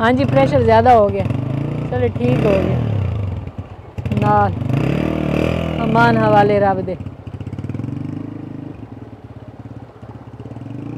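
Small motorcycle engine running and revving as the bike sets off, then a steady throb as it rides away, with people talking over it for the first part.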